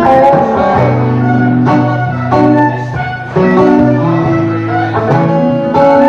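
An acoustic guitar strummed together with a hollow-body electric guitar playing sustained lead notes. This is an instrumental passage with no singing. There is a brief lull about three seconds in, then a fresh strum.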